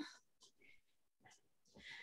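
Near silence, with a faint breath near the end.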